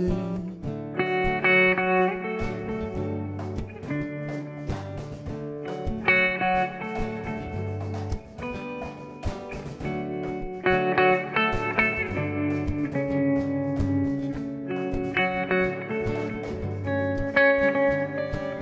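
Instrumental break of a live acoustic song: guitars playing the chords and a melody of held notes, with a steady percussion beat of cajón strokes.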